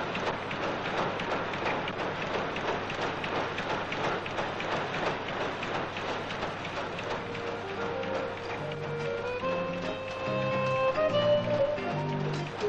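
Fast, dense clattering of factory power looms weaving cloth. About seven seconds in, music comes in with held notes over low chords and grows louder toward the end.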